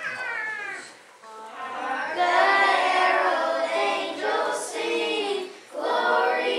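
A group of children singing together in long held notes, with a short break about a second in and another near the end.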